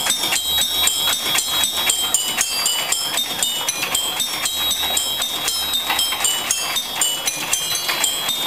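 Marblephone, a homemade solenoid-driven marble music machine, playing a melody: short high ringing notes sound over a dense, irregular clatter of clicks and rattles from the mechanism. The tones are hard to hear through that background noise.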